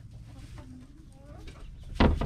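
Chickens clucking softly, a few short, faint calls over a steady low rumble.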